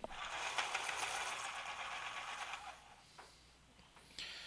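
Felt-tip pen scratching on paper while writing, a run of quick strokes lasting nearly three seconds, then one short stroke.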